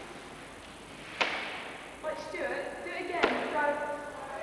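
Two sharp knocks or bangs about two seconds apart, each followed by a short echoing tail, with voices in between.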